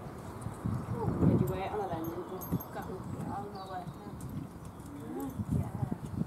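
A pony's hooves shifting and stepping on a concrete yard, with quiet murmured voices over it.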